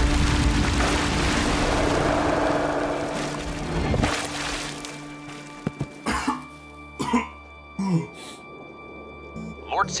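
Cartoon soundtrack: music under a loud rush of noise that swells and then dies away about four seconds in. This is followed by short coughs and grunts from the characters, about six, seven and eight seconds in.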